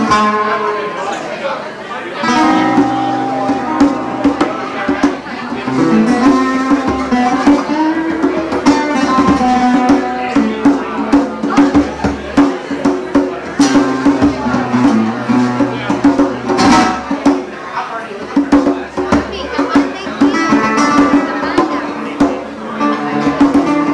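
Live duet of a nylon-string classical guitar playing picked melodic runs, with bongos struck by hand in quick, sharp strokes throughout.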